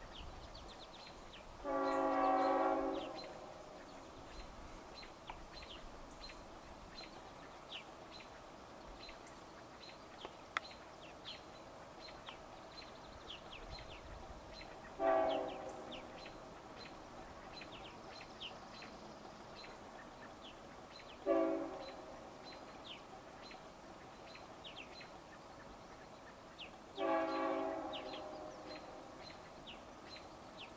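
A distant CSX freight locomotive's air horn sounds four times, spread over about half a minute: a long blast, two short ones, then a long one. It is heard over a quiet background of faint chirping.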